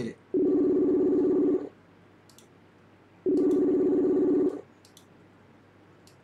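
Facebook Messenger outgoing-call ringing tone: two low rings, each a little over a second long, about three seconds apart, while the call waits to be answered.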